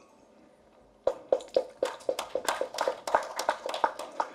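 A few people clapping, starting about a second in after a short hush: quick, irregular claps.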